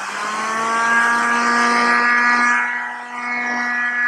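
Electric heat gun running, its fan motor spinning up over the first second and then holding a steady hum with a rush of air, as it blows hot air onto a vinyl sticker to preheat it.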